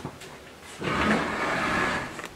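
A wooden door being pulled open: a rushing, brushing noise that starts just under a second in and lasts about a second.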